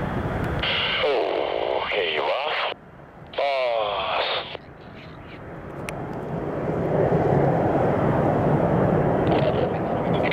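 Blue Angels F/A-18 Hornet jet engines running as the jets taxi, with a short, thin-sounding burst of air-band radio in the first few seconds. The jet noise drops out briefly, then swells louder from about five seconds in and holds steady.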